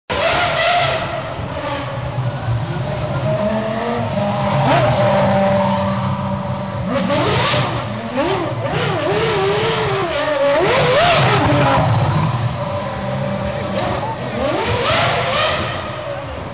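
Red Bull Formula One car's engine running and being revved in repeated blips, its pitch rising and falling several times, most in the middle stretch, over crowd voices.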